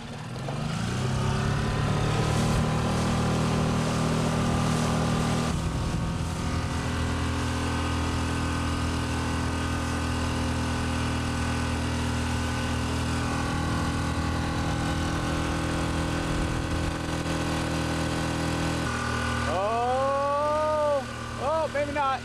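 Small outboard motor on a dinghy throttling up and then running steadily at speed.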